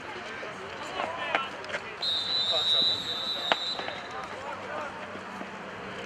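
A whistle blown in one steady, high, shrill blast lasting about a second and a half, starting about two seconds in, over sideline shouting. There is a sharp knock near the end of the blast.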